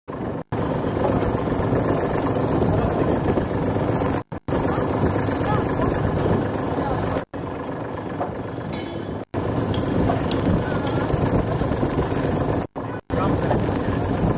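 Loud, steady outdoor background noise with indistinct voices, picked up by a camcorder microphone. It cuts out suddenly to silence several times, where the recording stops and restarts.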